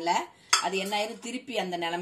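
A metal spoon stirring thick jaggery molasses syrup in a ceramic bowl, clinking against the bowl with a sharp clink about half a second in. A woman's voice talks over it.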